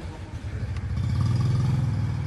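A low, steady mechanical drone, like an engine running, that grows louder about half a second in and then holds.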